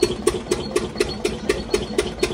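An engine or machine running steadily nearby, with a sharp, regular knock about four times a second over a steady hum.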